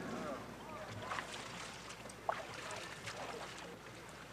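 Quiet outdoor ambience with faint distant voices, and a single sharp tap a little past halfway.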